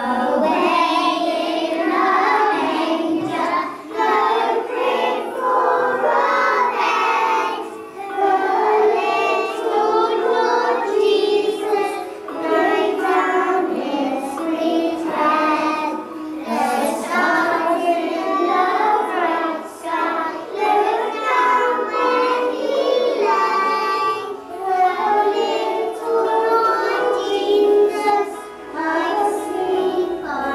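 Young children singing a song, starting abruptly and going on in phrases of about four seconds with short breaks between them.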